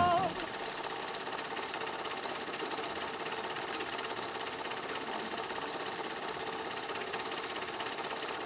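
The last note of swing music cuts off at the very start, followed by a steady, fast mechanical rattle like a small motor running.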